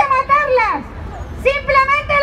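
A single high-pitched voice calling out in long, drawn-out syllables, one right at the start and another from about a second and a half in, over a low outdoor rumble.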